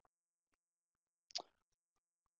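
Near silence, broken once by a brief faint sound about a second and a half in.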